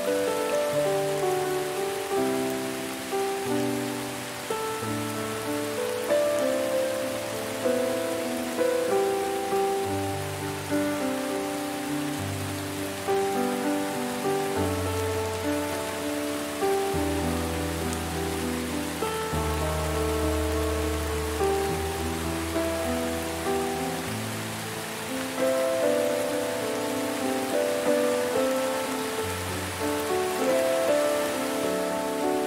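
Steady rain falling, mixed with slow, gentle instrumental music: soft melodic notes over low held bass tones.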